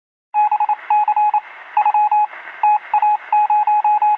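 Morse code: a single beeping tone keyed on and off in short and long pulses over a steady radio-like hiss, starting about a third of a second in.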